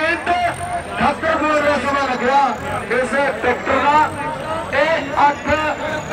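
Continuous fast talk from a commentator calling the timing, with tractor engines running underneath.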